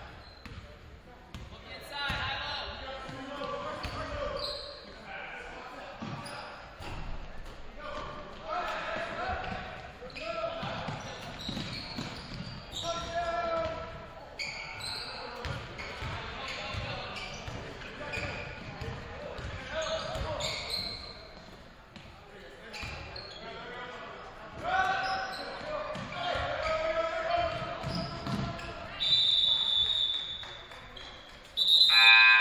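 A basketball is dribbled on a hardwood gym floor in repeated bounces, with players and spectators shouting and the sound echoing around the gym. Near the end a referee's whistle blows one steady shrill blast.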